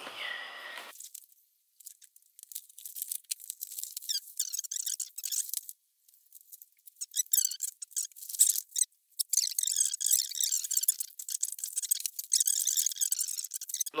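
Keyboard packaging being handled as the box is opened and unpacked: irregular, thin, high-pitched rustling and crinkling, broken by two short pauses.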